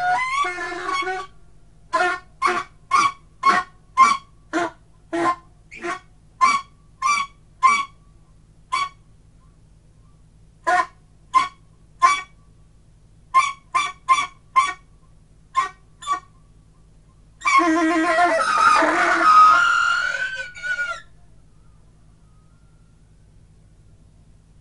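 Solo saxophone free improvisation: a run of short, separate honked notes, roughly two a second with a few pauses. These lead into a louder sustained passage of several tones at once lasting about three seconds, which cuts off and leaves only a low steady hum.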